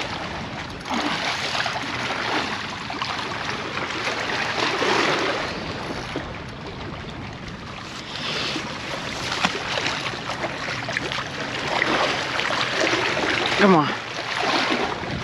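Wind and waves at a rock jetty, a rough rushing noise that swells and eases, with faint, indistinct voices now and then.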